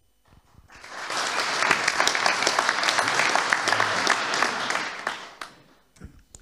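Audience applauding: the clapping builds up within the first second, holds steady, and dies away near the end.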